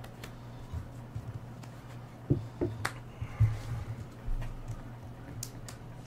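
Playing cards being handled and laid down on a cloth playmat: a few scattered light clicks and taps, over a steady low hum.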